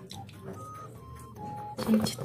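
Soft background music: a few single held notes at different pitches. Near the end comes a sudden loud rustle of the phone being handled.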